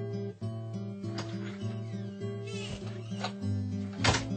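Background music: a soundtrack with a bass line moving through changing notes under steady sustained tones.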